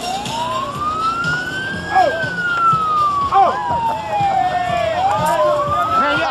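A siren wailing: one tone climbs for about two seconds, slides back down for about three, then starts to climb again near the end. Voices shout over it.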